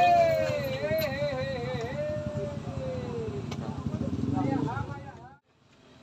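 A man's long drawn-out shout that wavers and falls in pitch, over a motorcycle engine running close by. Brief voices follow, then everything cuts off suddenly about five seconds in.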